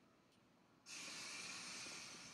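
Faint room tone, then about a second in a sudden, steady, fairly high hiss that carries on without a break.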